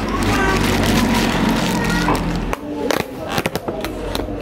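A paper napkin and a plastic takeaway container are handled over background voices and a low hum. In the second half, a rapid run of sharp crackling clicks sounds as the container's plastic lid is pulled off and handled.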